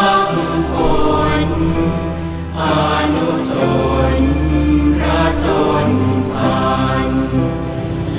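Thai Buddhist devotional chant of praise, sung as a melody over backing music with long held low bass notes.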